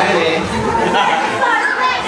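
Speech only: people talking, with several voices overlapping.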